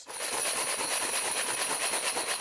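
A clear plastic box packed with small metal bells shaken hard: their rings blur into one dense, even jangle, a noise the audience calls white noise.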